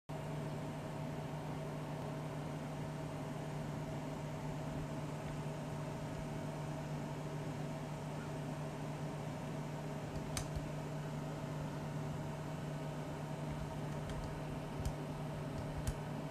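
A steady machine hum: a constant low drone with a fainter higher tone over a soft hiss, with a faint click about ten seconds in.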